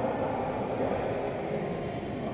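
Steady hubbub of a large indoor sports hall: indistinct voices and room noise, blurred by the hall's echo, with no racket or shuttle hits standing out.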